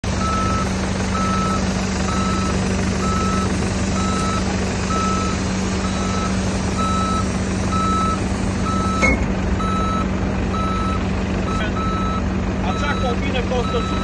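Farm vehicle engine running steadily under the evenly repeating beep of a reversing alarm, about three beeps every two seconds. A single sharp knock about nine seconds in.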